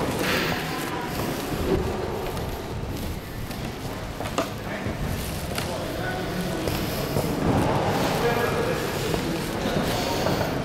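Indistinct voices of people talking in a large hall, loudest near the end, over a steady room hum, with a single sharp click about four seconds in.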